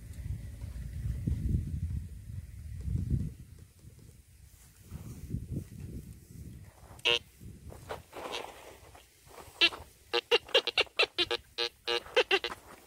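Metal detector sounding target tones. A single beep comes about seven seconds in, then a fast run of short repeated beeps, about four a second, near the end as the search coil passes back and forth over a buried metal target. A low rumble fills the first three seconds.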